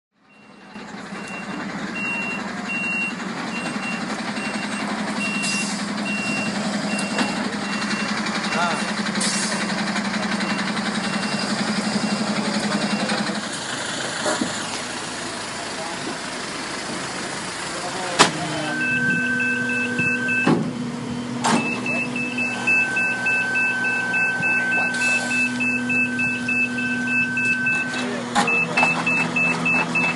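Flatbed tow truck's engine running while its high electronic warning beeper sounds in quick repeated beeps during loading of a damaged car. A sharp clank comes about eighteen seconds in.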